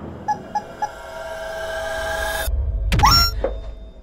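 Rubber chickens being squeezed: three short squeaks, then a long held squawk that cuts off suddenly, and a loud rising squeal about three seconds in.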